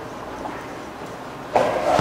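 A quiet pause holding only faint room tone, until a man's voice starts about one and a half seconds in.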